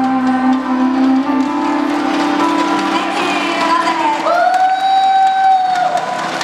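Female vocalist singing a Cantopop song over a backing track, ending on one long held note with a slight upward slide into it, near the end of the stretch.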